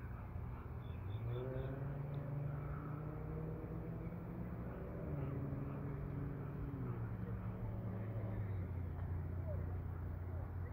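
Low, steady hum of an engine whose pitch drifts slowly up and down, with a few short, faint high chirps about a second in.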